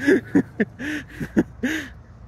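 A person laughing in a series of short, breathy bursts.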